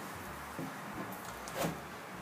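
Carving gouge pulled across a leather strop charged with green polishing compound, honing the outer bevel to a polished edge: soft rubbing strokes, with one brief louder sound about one and a half seconds in.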